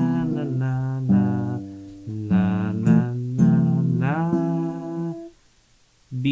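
Acoustic guitar chords under a man singing the melody on 'na' syllables, several chord changes in a row that stop about five seconds in.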